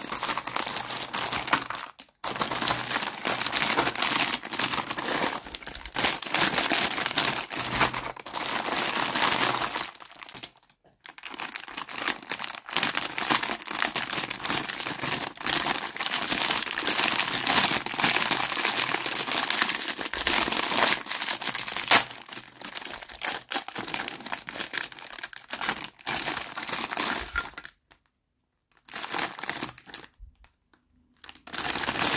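Clear plastic bags crinkling and rustling as pink plastic toy kitchen pieces are handled and unwrapped, in long stretches broken by a few short pauses, with one sharp click about two-thirds of the way through.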